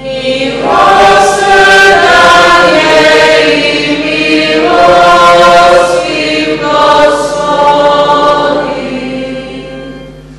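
A group of voices singing the responsorial psalm refrain of a Catholic Mass in slow phrases, fading near the end.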